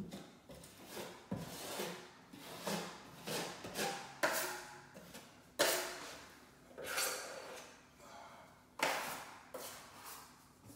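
Drywall knife spreading five-minute setting-type joint compound over a wall patch: about ten scraping strokes, roughly one a second, each starting sharply and fading.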